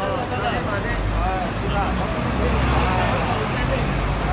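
Several people talking over the low, steady hum of a running vehicle engine, which grows stronger about half a second in.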